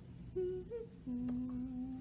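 Humming of the song's tune through closed lips with cheeks puffed out: a short note, a slightly higher short note, then a long lower note held through the second half.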